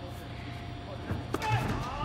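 Low background music bed with one sharp knock about a second and a half in, followed by a man's voice starting near the end.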